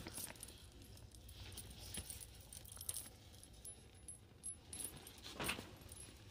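Faint metallic jingling and clinking of a chunky chain-link metal bracelet as the wrist moves while handling bags, with scattered light clicks and a brief louder cluster of clinks about five and a half seconds in.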